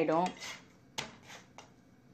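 A single sharp clink of kitchenware about a second in, with a brief ring, followed by a fainter tap.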